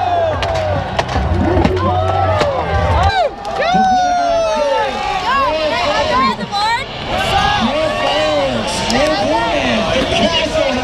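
Many voices shouting and whooping over one another, with rising-and-falling cries. A low steady hum underneath cuts off about three seconds in.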